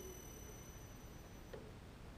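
Faint whine of a small AC motor and its Omron 3G3JX-AE004 variable frequency drive as the motor decelerates to a stop. A low tone dies away early, and thin high-pitched tones cut off about one and a half seconds in as the drive's output reaches zero.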